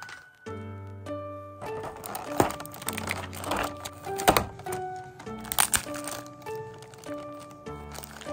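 Background music with a simple melody, overlaid from about two seconds in by rustling and crinkling of plastic packaging being handled. A few sharp clicks and knocks come through it, the loudest near the middle.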